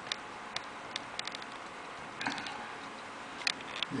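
Steady background hiss with a dozen or so short, sharp ticks scattered irregularly through it, a few coming in quick little clusters.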